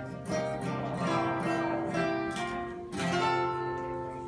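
Acoustic guitar strumming chords, about one strum a second, each chord left ringing.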